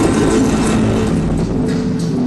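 Loud hip-hop dance-routine mix over stage speakers, switching abruptly at the start to a section with a revving-vehicle sound effect over sustained tones and bass.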